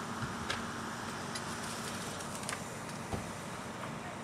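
Fire apparatus engine running at the scene: a steady rumble with a low hum, and a few sharp clicks and knocks scattered through it.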